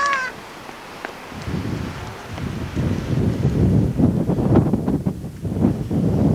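A gull's call at the very start, then wind buffeting the camcorder microphone as a low rumble that builds from about two seconds in and becomes the loudest sound.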